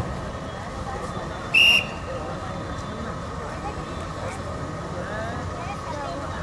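A referee's whistle gives one short, loud blast about one and a half seconds in, starting the wrestling bout, over a steady murmur of crowd voices.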